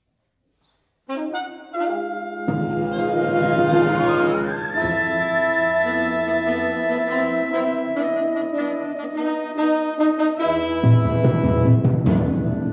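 Chamber wind ensemble of brass, saxophones and flutes starting to play about a second in with sustained chords. Lower instruments join soon after, one line sweeps upward near the middle, and a heavy low entry comes in near the end.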